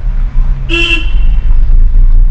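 A vehicle horn gives one short honk about three-quarters of a second in, over the steady low rumble of a car moving slowly, heard from inside the cabin.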